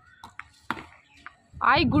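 A single sharp knock of a cricket bat striking the ball, followed by a loud shout.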